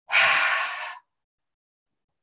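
A woman's forceful exhale through the mouth, a breathy rush of about a second that fades and stops. It is a bellows-like qigong cleansing breath, forced out by pressing on the lower belly while bending forward to expel stale air from the lungs.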